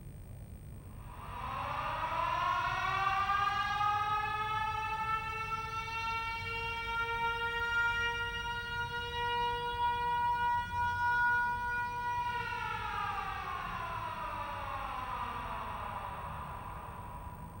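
Siren winding up from about a second in, holding one steady wailing pitch for several seconds, then winding down and fading near the end.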